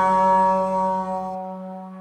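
Trombone holding the long final note of a jazz tune, slowly fading, while the recorded backing accompaniment under it cuts off abruptly about one and a half seconds in.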